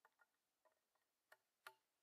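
A few faint clicks of paper shotshells being put into the chambers of a break-open 19th-century Sauer und Sohn drilling as it is handled. The sharpest click comes about a second and a half in.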